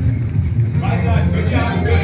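Loud workout music with a heavy, steady bass, and a voice over it from about half a second in.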